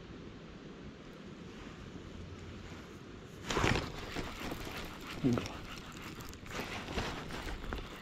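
Wind rumbling on the microphone. From about halfway, sudden loud rustling and clattering of hands and sleeve handling a baitcasting reel right by the microphone.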